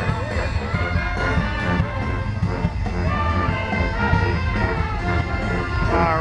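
Marching brass band playing in the street, with trumpets, trombones, saxophones and clarinets sounding together over a steady low bass line.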